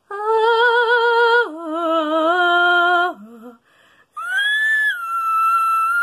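A woman singing unaccompanied: two long held notes with vibrato, the second lower, then after a short laugh a very high whistle-register note that swoops up, drops and holds steady.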